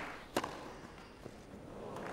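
A single sharp pop of a tennis racket's strings striking the ball on a serve, about half a second in, followed by a quiet crowd hush.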